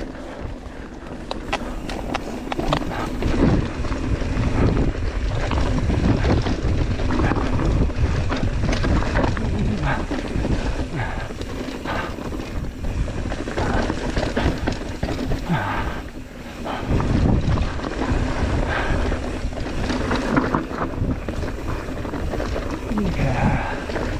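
Mountain bike descending a loose, rocky trail: tyres crunching over gravel and stones, with a constant clatter of small knocks and rattles from the bike, and wind buffeting the camera microphone.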